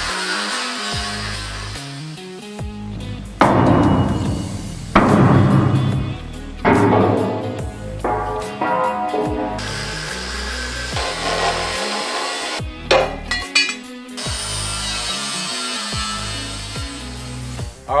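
Angle grinder cutting through the welds of steel chassis mounts in several runs of a few seconds each, with background music underneath.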